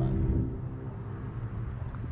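Small outboard motor on an inflatable dinghy idling steadily with a low hum.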